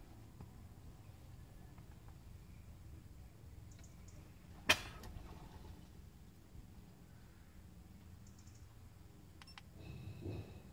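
Faint low steady hum, with a single sharp click about halfway through and a few faint ticks near the end.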